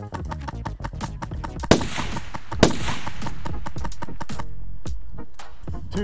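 Airsoft rifles firing: a string of sharp, irregular shots with music playing underneath, and two louder cracks about two seconds in.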